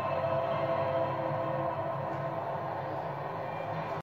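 Steady stadium crowd noise mixed with music, heard through a television's speaker.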